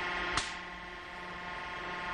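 Abraded tie-down webbing snapping apart under load in a hydraulic pull-test machine: one sharp crack about half a second in, the strap failing completely at roughly 1,900 pounds, far below its 15,000-pound rating. Under it runs the steady hum of the air-powered hydraulic unit.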